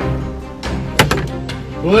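Background music, with one sharp knock about a second in: a die landing on a plastic-covered table.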